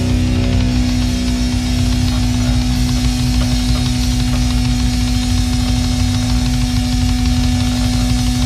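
Heavy metal band playing live: one long, steady held note over a dense wall of distorted guitar and rapid drumming.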